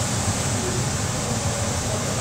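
Steady rushing noise with a low rumble from the rearing room's ventilation fans.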